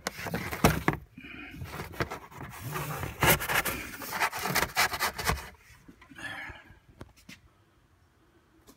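Cardboard template scraping and rubbing in a car trunk, with irregular knocks and clicks; it quietens after about five and a half seconds, leaving a few isolated clicks.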